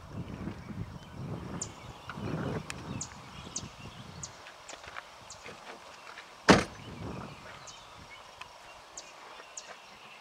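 Low rumble of a hand-held camera being handled and steadied for the first four seconds, with faint, very short high chirps scattered through, and one sharp click about six and a half seconds in.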